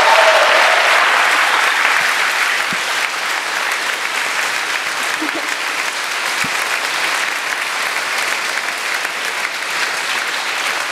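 Audience applauding, strongest in the first couple of seconds and then holding a little lower.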